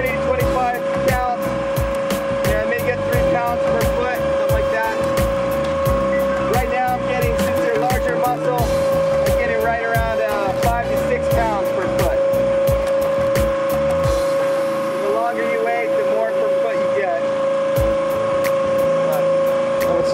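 A work boat's machinery running with a steady whine, over scattered clicks and knocks.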